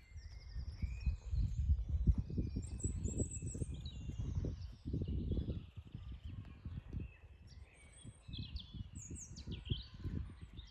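Wild birds singing and chirping, short high trills and calls throughout, over a louder, uneven low rumble that is strongest in the first half.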